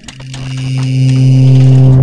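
Sound-design drone for an animated logo intro: one steady low tone with overtones, swelling louder and then cutting off suddenly at the end.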